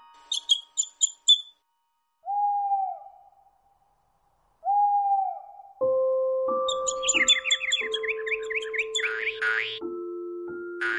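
A few short high bird chirps, then two single owl hoots about two and a half seconds apart, each about a second long. From about six seconds in, gentle held music notes begin with quick bird twittering over them.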